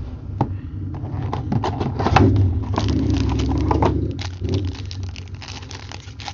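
Hands opening a trading-card box and crinkling the plastic-and-foil wrapper of the card pack inside: a run of small crackles and clicks over low handling noise, loudest about halfway through.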